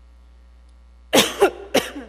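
A woman coughing, a quick run of three or four harsh coughs starting about a second in, picked up close on a handheld microphone.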